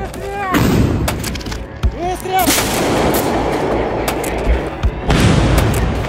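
Artillery gun firing three shots, roughly two and a half seconds apart, each a sudden heavy blast that rumbles on for a second or more.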